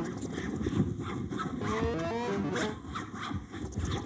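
Amplified, live-processed scraping of graphite sticks drawing on a paper-covered table, turned into electronic sound: dense scratchy rasps and clicks, with a cluster of rising pitched tones about two seconds in.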